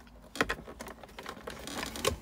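Plastic clicks and knocks from a car's center-console storage drawer as it is handled and pulled open. The sharpest click comes about half a second in, with a few lighter ones near the end.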